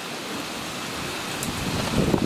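Wind and rain of a severe thunderstorm: a steady rushing hiss, with gusts buffeting the microphone picking up near the end.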